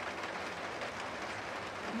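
Steady rain falling on surfaces, an even hiss with no pauses.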